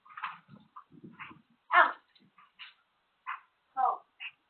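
A dog crying out in a series of short yelps and whines. The loudest comes about two seconds in and falls steeply in pitch; another falling cry comes near the end.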